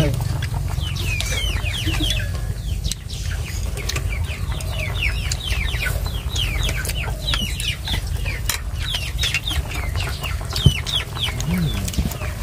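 Chickens calling: a run of many short, high, falling chirps, several a second, over a steady low rumble, with one sharp knock near the end.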